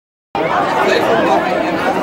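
Silence, then about a third of a second in, spectators' chatter cuts in abruptly: many voices talking over one another.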